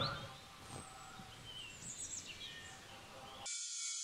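Faint outdoor ambience with a few small bird chirps. About three and a half seconds in it cuts abruptly to a thin, high hiss.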